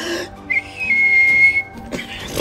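A single steady high whistle, held for about a second, over background music, with a short rushing noise just before it.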